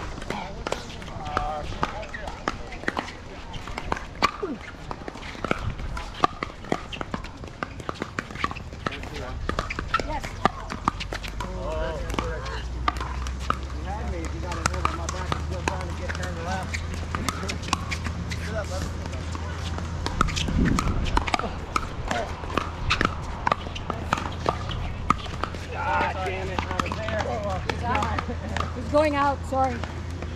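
Pickleball paddles hitting plastic balls: many sharp, irregular pocks from this and the surrounding courts, under scattered background voices.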